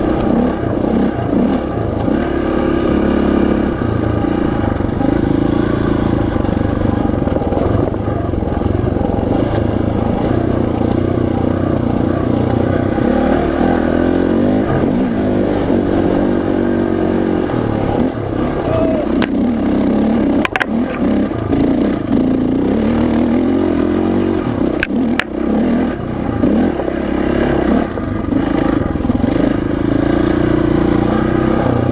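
Dirt bike engine running under the rider's changing throttle, its pitch rising and falling as it climbs and drops through the revs on a dirt trail. A couple of sharp knocks from the bike stand out, one about two-thirds of the way through and another a few seconds later.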